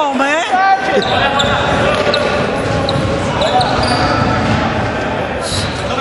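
Indoor basketball game: a ball bouncing on the hardwood court and players' and spectators' voices, with a voice calling out in the first second, all echoing in a large gym.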